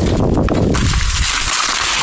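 Dense crackling and low rumbling close to a body-worn action camera as a hiker reaches down and takes hold of his dropped backpack in the grass. The rumble eases about a second and a half in.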